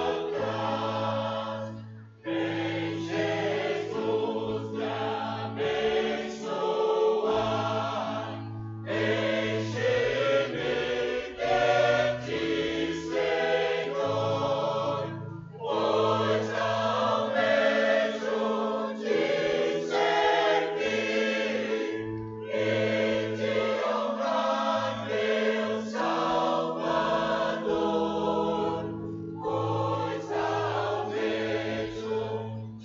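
Church choir singing in phrases broken by brief pauses about every six to seven seconds.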